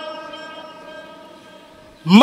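The tail of a man's voice ringing on through a loudspeaker sound system after he stops speaking: a steady pitched tone with overtones that fades away evenly over about two seconds.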